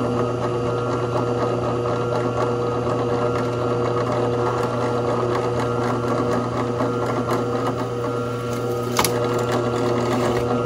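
Scroll saw running steadily, its thin spiral blade cutting a sheet-metal panel. A sharp click comes about nine seconds in.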